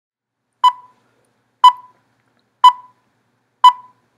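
Film-leader countdown beeps: four short, high beeps, one each second, each cutting off quickly.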